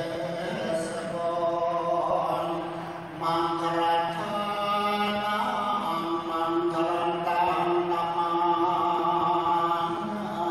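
Buddhist chanting by a group of voices in unison, long notes held on a steady pitch with only a short break about three seconds in.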